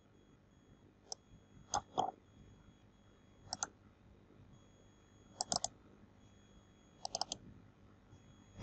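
Computer mouse and keyboard clicks, short and sharp, coming in small groups of one to three every second or two as text is selected, copied and pasted.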